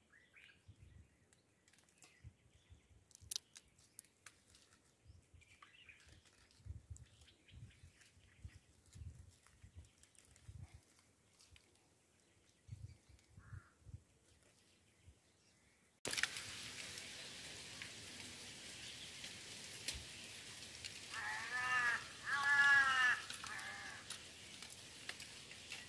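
Near silence with faint, scattered low knocks. The background noise then rises abruptly, and near the end a bird gives a quick run of short, arching calls.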